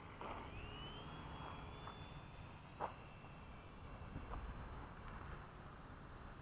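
RC Gee Bee model plane's electric motor and propeller throttling up for takeoff: a thin whine rising in pitch, then holding a steady high note. A few faint clicks, the sharpest about three seconds in.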